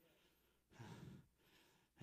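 A single faint breath from a man at a microphone, about a second in; otherwise near silence.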